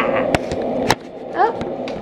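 Two sharp knocks about half a second apart, handling noise on a handheld camera, followed by a brief rising vocal sound from a toddler.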